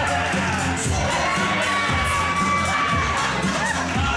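Crowd with many children shouting and cheering over wrestling entrance music with a steady beat; one long high shout is held through the middle.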